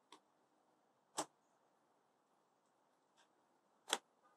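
A rubber band being wrapped tightly around a small folded bundle of fabric for tie-dye, giving a few sharp snaps. The loudest snaps come about a second in and just before the end, with fainter ones between.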